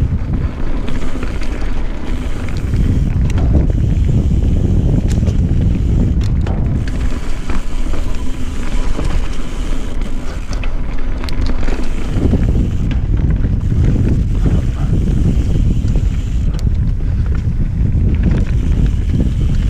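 Wind buffeting the microphone of a mountain bike's handlebar camera, mixed with the rumble of knobby tyres rolling over a dirt trail. Scattered short clicks and rattles come from the bike as it runs over the rough ground.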